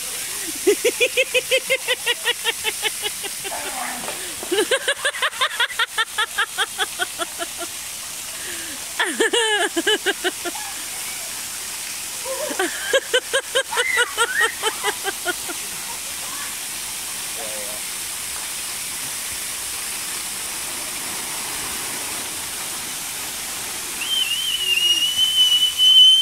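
Splash-pad water jets spraying with a steady hiss, while people laugh in three long, rapidly pulsing bursts. A sharp noise comes near the middle, and a high held squeal near the end.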